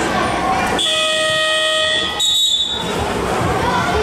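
A sports-hall buzzer sounds one steady tone for just over a second. A short, high referee's whistle blast follows, over the chatter of the hall crowd.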